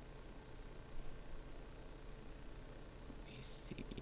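Quiet room tone with a steady low hum and a brief faint hiss near the end.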